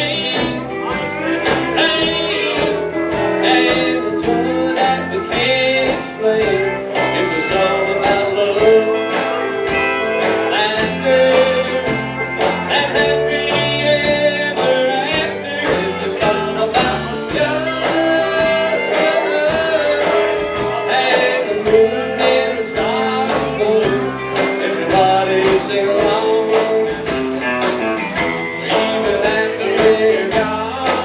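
A live country band playing electric guitars over a steady drum beat, with no clear sung words.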